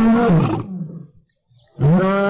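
A lion roaring: one long roar that fades out within the first second, then a second roar beginning near the end.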